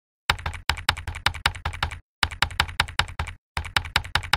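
Computer keyboard typing sound effect: quick key clicks, about five a second, in three runs with short pauses between them.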